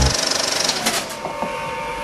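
A child's plastic tricycle rolling along a hallway floor: a steady rattling rumble with a few sharp clicks, which comes in about a second in as a noisy rush fades.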